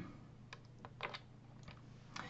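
A few faint computer keyboard clicks, about six short taps scattered over a second or so, as keys are pressed to advance a presentation slide.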